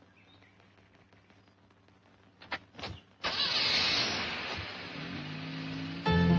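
Two car doors shut in quick succession, then a car starts up and pulls away, loud at first and easing off. Music comes in near the end.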